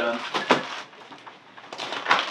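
Hands rummaging in a plastic storage tote: a sharp knock about half a second in, then faint rustling of packed items.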